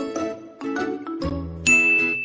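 Light background music with a melody of steady notes, then, about one and a half seconds in, a bright ding sound effect strikes and rings on one long high tone.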